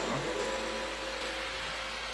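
Steady background room noise between spoken phrases: an even hiss and hum with a faint held tone, like ventilation running.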